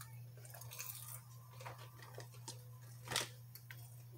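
A person chewing sweet potato fries: soft, wet mouth sounds and small clicks, with one louder mouth sound about three seconds in.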